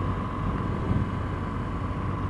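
BMW R1200GS boxer-twin motorcycle cruising at steady road speed, heard from the rider's helmet: a continuous rush of wind and road noise over the low hum of the engine.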